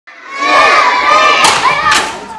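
Several children shouting together in a hall, with two sharp smacks about a second and a half and two seconds in.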